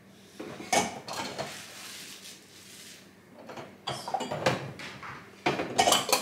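A stainless steel milk frother jug and other kitchen items clinking and knocking on the stone countertop as they are handled and set down. There are several clusters of clatter: about a second in, again from about four seconds, and loudest just before the end.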